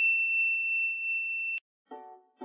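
A single high ding sound effect: one clean bell-like tone struck sharply, its upper shimmer fading fast while the main note holds steady. It cuts off suddenly about a second and a half in.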